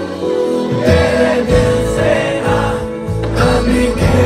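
Live concert music over a PA, with a heavy bass beat and many voices singing together, as heard from inside the crowd.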